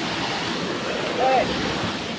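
Steady rush of water from a small waterfall splashing down a rock face into its pool.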